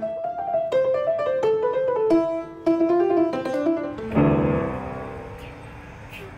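Upright acoustic piano being played: a simple melody of single notes, then about four seconds in a loud chord of many keys struck at once, left to ring and fade.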